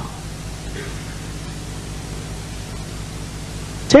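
Steady hiss with a low electrical hum underneath: the background noise of the sermon recording, heard while the preacher pauses.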